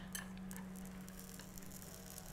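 Faint sizzle of crepe batter cooking on the hot electric crepe pan, over a faint steady hum.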